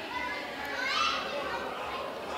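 A crowd of people chattering, with several high-pitched voices calling out over the hubbub; the loudest call comes about a second in.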